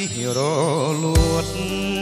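Khmer pop song: a male voice singing a line with a wavering vibrato over backing music, then a drum hit and bass come in just over a second in and the full band carries on.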